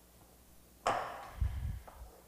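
A glass mixing bowl knocks sharply against a marble worktop a little under a second in, followed by a few duller bumps and rustling as cookie dough is worked in it by hand.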